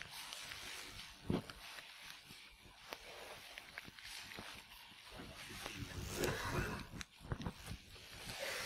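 A sheet of notebook paper being folded and creased by hand: soft rustling with short crisp crinkles. Faint voices murmur underneath.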